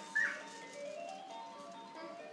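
Baby bouncer's electronic music toy playing a simple tinkling jingle, note after note stepping up and down, with a short high chirp just after the start.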